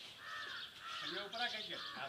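A crow cawing a couple of times in the first second, followed by a short bit of a person's voice about one and a half seconds in.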